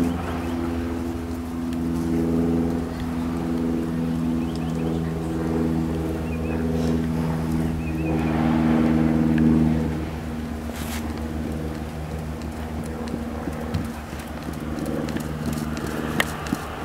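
A motor vehicle's engine running at a steady pitch. It swells to its loudest a little past the middle, then fades away, with faint hoofbeats of a horse trotting on sand beneath it.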